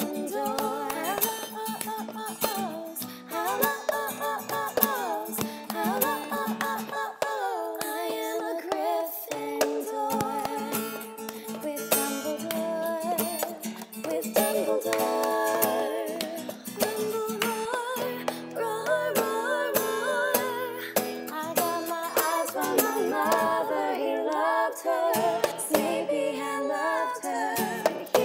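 Strummed acoustic guitar accompanying women's voices singing, with layered harmony parts and sustained notes with vibrato.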